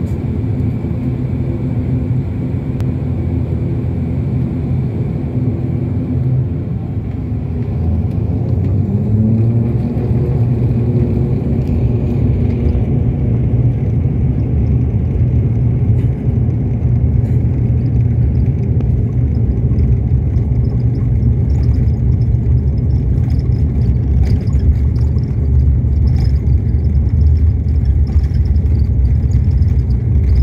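ATR 72 twin turboprop engines and propellers heard from inside the passenger cabin, a steady low drone on the runway. About eight seconds in the pitch rises and the sound gets louder as engine power comes up, and it grows a little louder again toward the end as the aircraft speeds up for takeoff.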